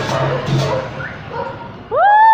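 Live vallenato band music over loudspeakers, with drum beats and a bass line, stops about a third of the way in. Near the end a loud, drawn-out high cry begins, rising in pitch and then holding.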